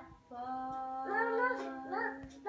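A young child singing a few high, wavering notes over a steady, low held note.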